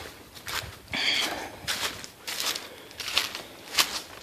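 Footsteps crunching through dry leaf litter on a forest floor, an uneven stride about two steps a second, with a brief louder sound about a second in.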